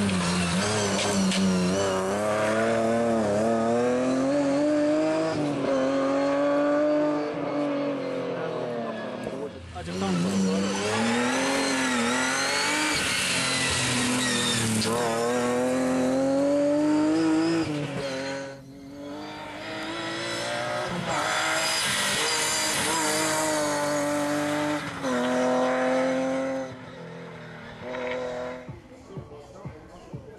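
Rally car engine revving hard and gliding up and down in pitch through gear changes, with brief lifts where the engine note drops away, and quieter towards the end.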